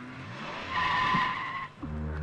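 A car speeding up, then its tyres screeching loudly for about a second as it skids to a halt, the screech cutting off sharply.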